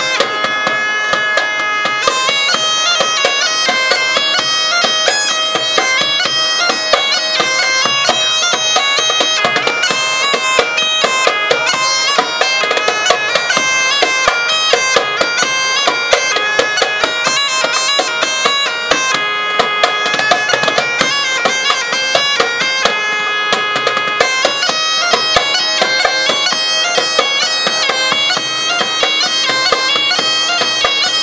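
Bagpipe with a fur-covered bag playing a melody over its steady drone, joined by a djembe hand drum beating along.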